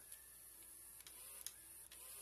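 Near silence: faint room hiss with a few faint clicks, about one, one and a half and two seconds in.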